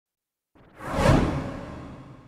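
Whoosh transition sound effect: a rushing swell that builds from about half a second in, peaks around a second, then fades away.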